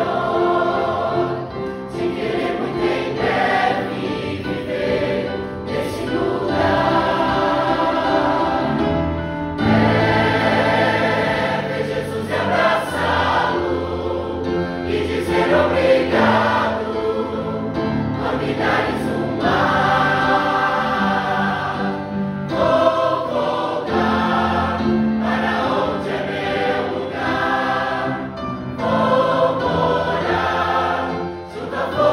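Large mixed choir of men and women singing a hymn together in phrases that swell and pause. Deeper low notes join about ten seconds in.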